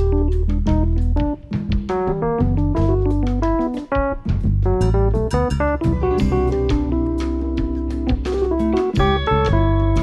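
A live blues band playing instrumental: an electric guitar runs quick melodic phrases over electric bass, drum kit and keyboard.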